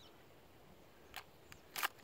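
A few light clicks, then a sharper double click near the end: a mini shotgun shell being pushed into a pump shotgun's tube magazine and snapping past the shell stop.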